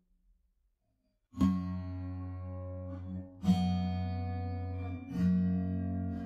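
Acoustic guitar, three chords each strummed once and left to ring. The first comes about a second and a half in, the others about two seconds and a second and a half after it.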